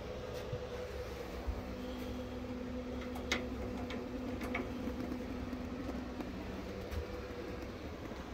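A steady mechanical hum with a few faint clicks and knocks over it.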